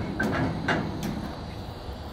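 A couple of faint knocks from the steel barrier and its mesh fence panels being pushed on, over a low steady rumble.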